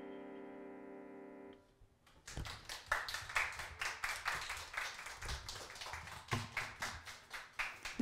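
The last held chord of a violin and keyboard fades and stops about one and a half seconds in. About half a second later, applause from a small audience begins and continues.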